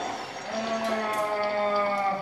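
A person's voice drawing out one long, held note, dipping slightly in pitch toward the end.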